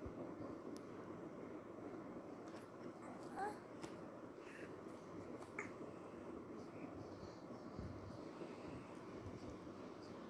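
Faint background hiss with a few soft clicks, and one brief high rising squeak from a baby about three and a half seconds in.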